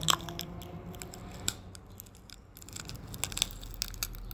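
Close-up wet mouth sounds: scattered tongue and lip clicks and smacks from an open mouth, the loudest just after the start, a few more about one and a half seconds in and near the end.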